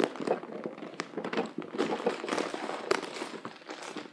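Clear plastic bag crinkling and rustling as a hand rummages through the clothes inside it, with a few sharp taps and knocks, the sharpest about a second in and near the three-second mark.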